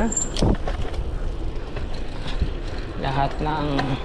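Mountain bike rolling on asphalt, with a steady low rumble of tyre and wind noise on the action-camera microphone. About half a second in there is a single clunk as the bike goes over a painted speed bump.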